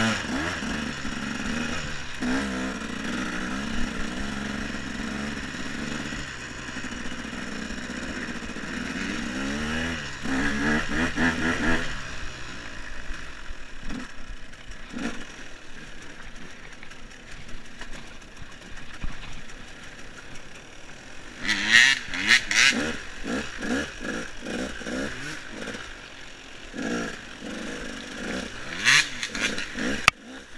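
KTM EXC enduro motorcycle engine running under the rider, held steady and then revved up about ten seconds in, after which it runs lower and uneven on the throttle. Sharp clattering knocks come from the bike over the rough trail, loudest about two-thirds of the way through and again near the end.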